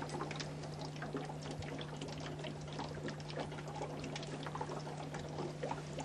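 Liquid bubbling and fizzing with many small irregular pops, over a steady low hum.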